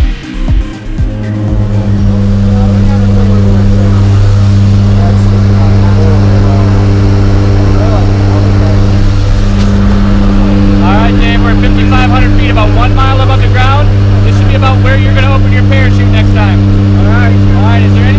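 Jump plane's engines running with a loud, steady drone, heard from inside the cabin, with voices faintly over it from about halfway through.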